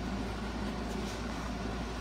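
Steady low hum and hiss of room background noise, with no distinct events.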